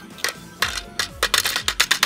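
A plastic toy horse figure tapping and clattering against a miniature toy frying pan and plastic table: a couple of separate taps, then a quick run of clicking knocks in the second half. Background music runs underneath.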